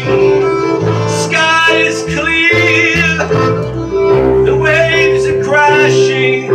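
Live acoustic folk music in an instrumental break: a violin bowing a wavering melody over upright bass and keyboard.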